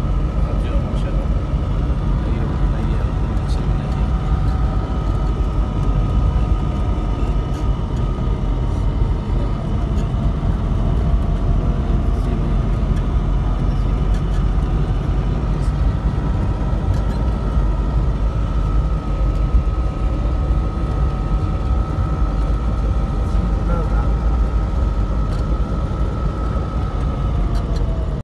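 Inside a moving vehicle, the engine and tyres run as a steady low rumble, with a sustained whine that drifts slowly up and down in pitch.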